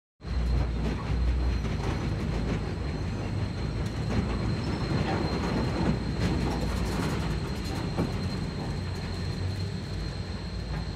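A steady low rumble with many scattered clicks and a thin steady high whine, cutting in suddenly out of silence.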